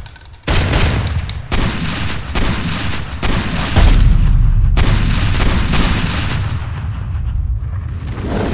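Film gunshots from a handgun and an AR-15-style rifle, about one shot a second, each with a long ringing tail. A deep boom about four seconds in is the loudest moment, and the shots give way to a low rumble over the last few seconds.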